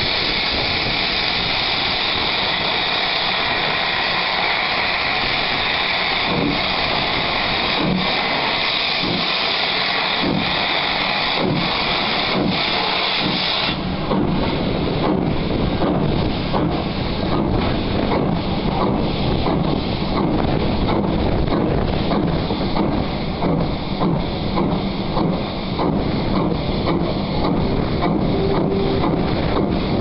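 Caledonian Railway 0-6-0 steam locomotive pulling away. A loud, steady hiss of steam runs with slow, widely spaced exhaust beats from about six seconds in. The hiss cuts off about fourteen seconds in and the exhaust beats quicken to about two a second as the engine gathers speed.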